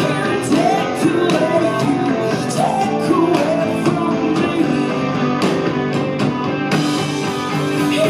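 Live pop-punk rock band playing loud: electric guitar and drums with repeated cymbal hits, under a woman's lead vocal.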